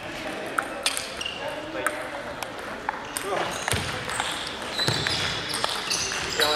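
Table tennis balls clicking irregularly off paddles and tables in a large sports hall, with short high squeaks of shoes on the hall floor.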